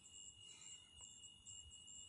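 Near silence: a faint background with a steady high-pitched tone.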